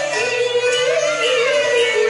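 A woman singing a Cantonese opera song into a microphone with long, wavering notes, over instrumental accompaniment.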